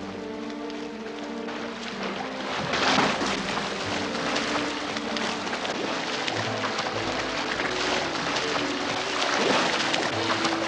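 Music with held notes over water splashing from two swimmers racing in a pool. The splashing comes in about three seconds in with a loud splash, then keeps on as churning from their strokes.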